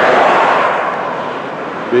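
A passing road vehicle: a loud steady rushing noise that is strongest at first and fades slightly.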